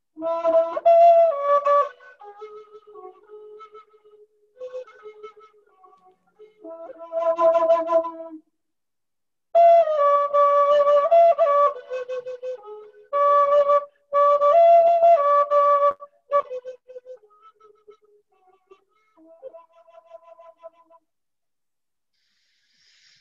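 Comanche flute, a thin wooden Native American flute with a warbling tone, played in slow phrases of held notes. It comes through a video call, and the sound cuts out abruptly and turns faint between phrases, so that some of the playing is lost.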